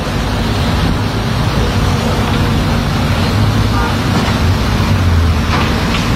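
Steady low rumbling background noise with no clear engine tone, constant in level throughout.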